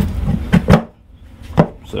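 A few sharp knocks of hard 3D-printed plastic mold sections being fitted together on their locating pins: two close together about half a second in, a third about a second later.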